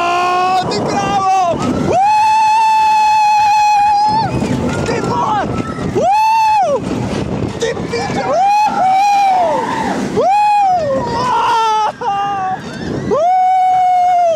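Riders screaming on a Vekoma Boomerang roller coaster as the train runs through its loops: about five loud, high held screams, the longest about two seconds. Under them runs the rushing noise of the train on the track.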